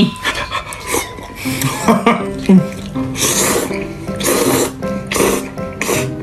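A person slurping ramen noodles from a bowl in three loud bursts in the second half, over background music.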